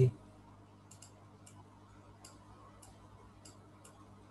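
Faint computer mouse clicks, single clicks about every half second, as anchor points are placed with Photoshop's pen tool, over a steady low electrical hum.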